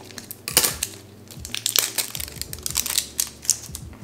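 Scissors cutting open a crinkly plastic package, with a run of irregular sharp crunches and crackles of plastic.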